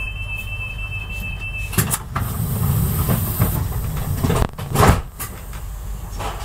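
Inside a passenger train coach starting to pull away from a station: a steady low rumble, with a steady two-note electronic tone that stops just under two seconds in, followed by a knock. The rumble then grows louder with a high hiss for a second or so, and sharp clunks come about five seconds in.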